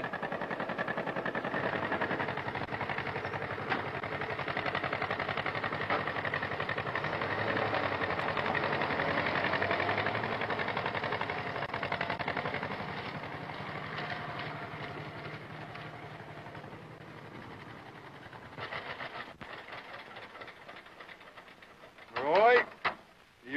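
John Deere Model B's two-cylinder engine running with a rapid, even beat of firing pulses, fading gradually through the second half.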